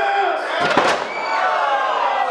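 Crowd shouting, with a sharp, heavy impact about two-thirds of a second in as a wrestler is slammed down onto the ring mat.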